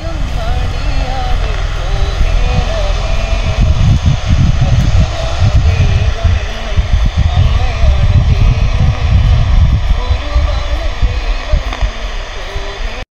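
A portable Aditya radio held up close and switched on loud, giving out a dense, distorted broadcast buried in static, with a faint wavering voice in it.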